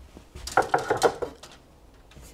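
Metal clattering: about half a dozen quick clanks with a ringing tone, crowded into about a second, as a steel framing square is picked up and handled.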